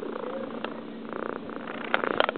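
Domestic cat purring close to the microphone, a steady rapid pulsing, with a couple of short clicks.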